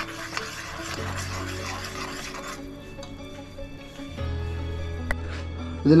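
Background music with sustained notes, over a metal spoon scraping and stirring thick masala paste in a kadai for the first two seconds or so. A single sharp click about five seconds in.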